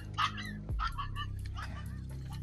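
A dog barking a few short times over background music.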